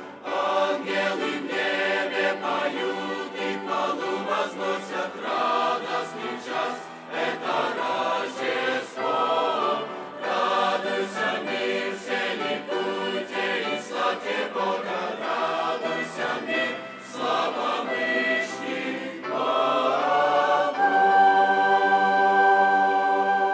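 Large mixed choir of men's and women's voices singing a hymn. Near the end the voices swell louder into a long held chord.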